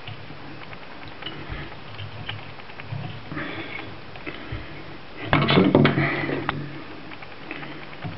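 Soft handling sounds of fly-tying thread being wrapped and tied off at a hook held in a vise, with scattered small clicks, and a louder burst of sound lasting about a second, starting a little past halfway.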